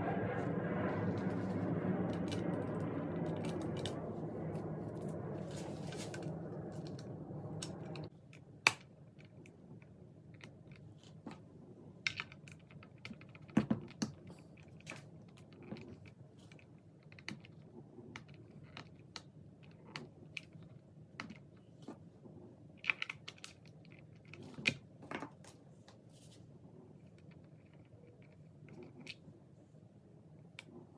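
A steady hum with several tones fades over the first eight seconds and stops suddenly. After that come scattered small metallic clicks and taps as gold-plated tuners and their bushings are fitted to an electric guitar's headstock.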